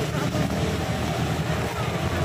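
Steady low engine rumble of nearby road traffic.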